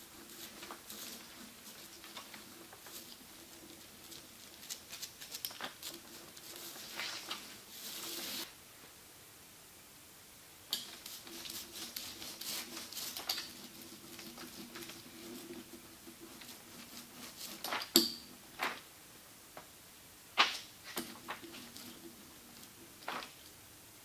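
Small hand roller spreading iron-on veneer adhesive over wood veneer: a patchy rolling, rubbing sound in two long stretches. A few sharp knocks come in the latter part, the loudest about three quarters of the way through.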